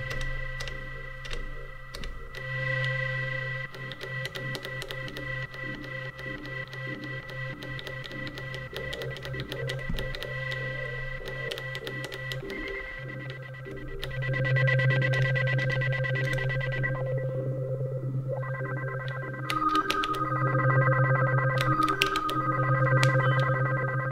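Elektron Digitone FM synthesizer sounding a sustained electronic tone as its LFO is adjusted. The tone pulses rapidly for much of the first half, then holds steady. About three-quarters of the way through it briefly drops away and returns with new notes added.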